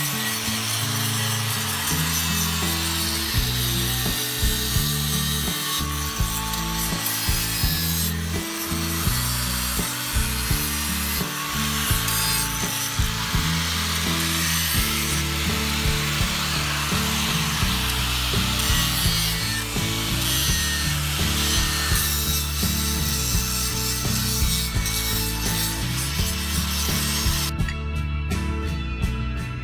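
Electric angle grinder with an abrasive disc grinding carved stone, a continuous rasping grind that rises and falls as the disc is worked over the surface, with background music underneath. The grinding cuts off just before the end.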